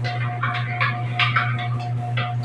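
A spoon stirring a drink in a ceramic mug: faint, irregular light scrapes and ticks a few times a second, over a steady low hum.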